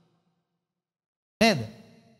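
Silence for about a second and a half, then a man's short vocal sound, falling in pitch as it fades.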